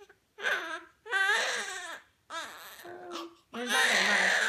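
Newborn baby with a cleft palate crying: four short pitched wails with brief silent breaths between them.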